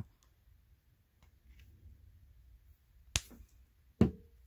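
Small hard-plastic clicks from handling an action figure's translucent effect accessory and clear display-stand rod: a few faint ticks, then one sharp click about three seconds in.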